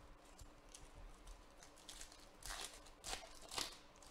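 Foil trading card pack being crinkled and torn open by hand. Soft crackling first, then three short ripping rasps in the second half, the last the loudest.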